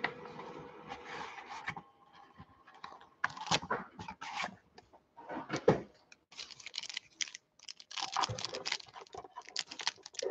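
A cardboard trading-card box being handled and opened, then a foil card pack crinkling in the fingers: irregular clicks and rustles, turning to denser crinkling in the second half.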